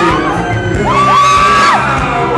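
Loud live pop music from a band in a hall, with a high voice holding a long note that swoops up, holds and falls away near the middle, and audience whoops.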